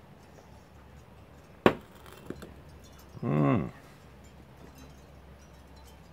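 A single sharp clink of a glass beer glass about one and a half seconds in, then a fainter click shortly after. Near the middle comes a short wordless vocal sound from the drinker, a pleased 'ahh' between sips.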